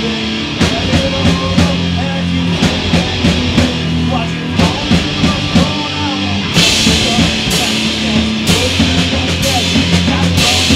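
Metal band playing through room mics, with distorted guitars, bass and a drum kit keeping a steady beat. Cymbals crash in and wash over the top about six and a half seconds in.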